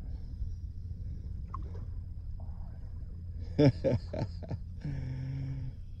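Wind buffeting the microphone, a steady low rumble under a few spoken words.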